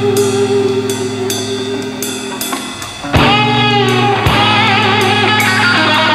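Rock band playing live, led by a Les Paul-style electric guitar over drums and cymbals. A held chord fades for about three seconds. Then the band crashes back in loudly, and the guitar plays a lead with bending, wavering notes.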